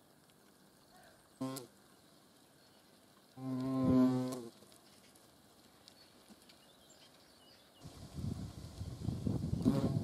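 European hornet wings buzzing close to the microphone: a short low hum about a second and a half in, then a louder, steady low hum of about a second that swells and cuts off just before the halfway point. From about eight seconds on comes a rougher low buzzing and rustling of hornets at the nest box entrance.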